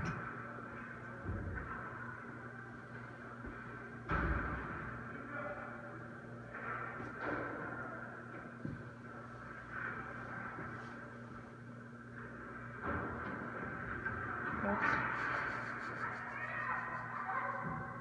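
Ice hockey practice on an indoor rink: a few scattered knocks of sticks and puck, the loudest about four seconds in, over a steady low hum, with faint voices.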